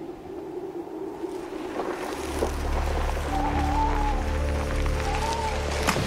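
Eerie animated-film soundtrack: a low drone swells in about two seconds in, with held tones above it and a wavering, moaning high tone that comes twice.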